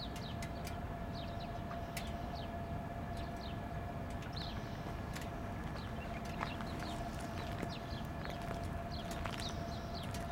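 Outdoor ambience: small birds chirping in short, repeated falling notes over a steady low rumble and a faint constant whine.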